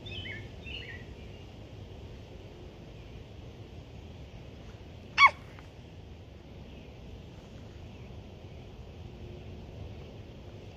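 Faint bird chirps in the first second over steady low outdoor background noise, then a girl's short, sharp cry of "Ah!" about five seconds in, the loudest sound.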